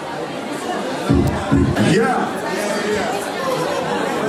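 Crowd chatter, several people talking at once, with two short low thumps about a second in.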